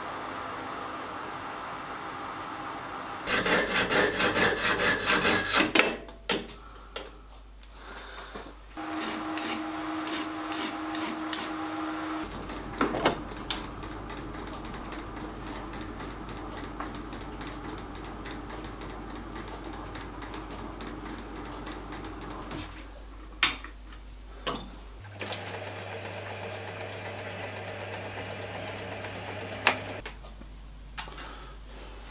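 Small metalworking lathe running through a series of short clips as a metal rod is turned to a chamfer and then cut with an M4 thread using a die in a tailstock die holder. A fast rattle comes a few seconds in, a steady high whine runs through the middle, and a few sharp clicks come near the end.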